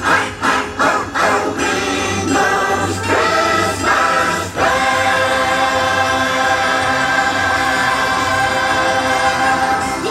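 Live stage-show music with a choir singing over the band: short, punchy phrases for the first few seconds, then a long held chord through the second half, like the big finish of a number.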